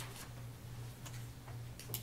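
A handful of short, sharp clicks at irregular intervals, loudest near the start and near the end, over a steady low hum from a noisy microphone feed.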